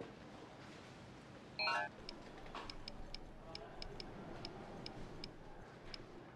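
A short, bright multi-note chime from a smartphone about a second and a half in, the loudest sound here, followed by about a dozen light, irregularly spaced keyboard click sounds as a message is typed on the phone's touchscreen.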